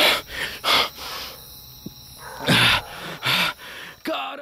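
Dogs barking: two pairs of short barks, the pairs about two seconds apart.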